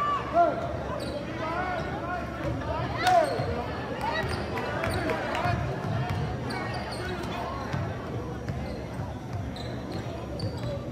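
Basketball being dribbled on a hardwood gym floor, with short sneaker squeaks in the first few seconds and voices echoing around the hall.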